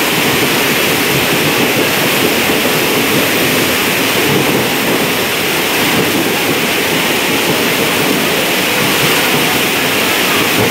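Passenger train running through floodwater that covers the tracks, its coaches churning up and spraying the water: a steady, unbroken rush of water and train noise.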